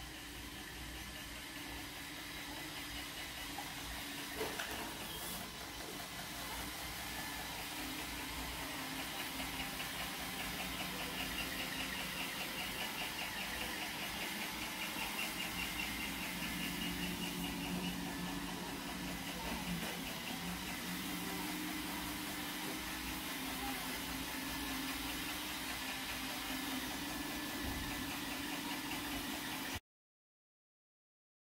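A small motor or household machine running steadily, a low hum with hiss. It grows a little louder over the first several seconds, and a fast, fine whirring rhythm is added for several seconds in the middle. The sound cuts off abruptly just before the end.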